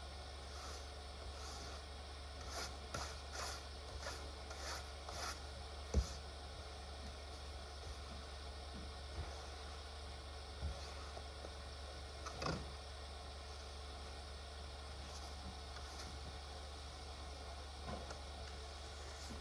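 Faint scraping strokes of a snow brush sweeping snow off a car, about two strokes a second for a few seconds, then a sharper knock. Scattered soft knocks and ticks follow.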